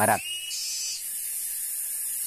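Insects buzzing in a high, thin drone that switches on and off in stretches of about half a second to a second.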